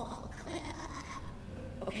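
A pause in speech: quiet room tone with a low steady hum and faint rustling, before a woman's voice comes back in near the end.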